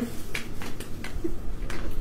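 A few light clicks in a pause between voices, about two a second, evenly spaced.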